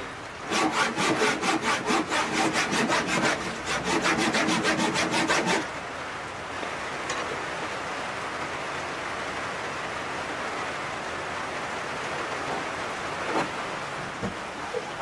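Handsaw cutting through a wooden board in a quick, even run of back-and-forth strokes that stops about six seconds in, leaving a steady hiss.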